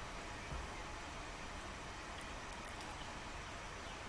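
Quiet room tone: a faint, steady background hiss with no distinct sound, apart from one faint click about half a second in.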